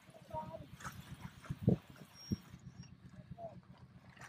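Brief muffled voice sounds, then two dull thumps about half a second apart near the middle, over a low, fast, steady pulsing hum.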